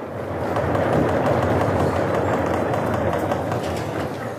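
Lecture-hall audience applauding at the end of the lecture: a dense clatter of many small strikes that builds over the first second and then holds steady.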